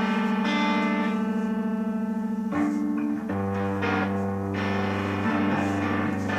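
Electric guitar playing sustained notes. The first note wavers with vibrato, then the playing moves to other notes about halfway through, with a lower note joining in.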